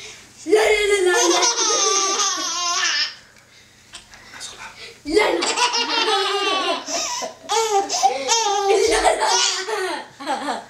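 Baby laughing in two long, high-pitched runs: the first from about half a second in for some two and a half seconds, the second from about five seconds in until near the end.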